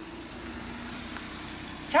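A kei mini-truck's small engine runs steadily as the truck pulls up and stops. Its note drops a little about half a second in.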